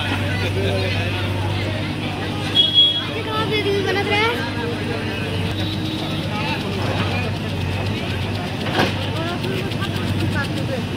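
JCB backhoe loader's diesel engine running steadily with a low hum, with voices from the crowd talking around it.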